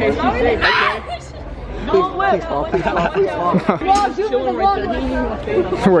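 Several people talking and chattering over one another, with a short noisy burst about a second in.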